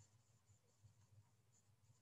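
Near silence: the narration's pause, with only a faint low hum.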